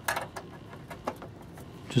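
Microsoft InPort bus mouse's round multi-pin plug being pushed into its socket on the bus mouse card's metal bracket: a short cluster of clicks and scrapes at the start, then a couple of lighter clicks as it seats.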